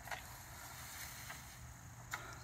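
A few faint, short scratches of a rake being drawn through wood-chip mulch, over a low steady rumble.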